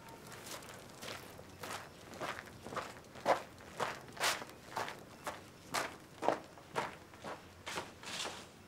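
Footsteps of people walking on a packed dirt yard, an even pace of about two steps a second.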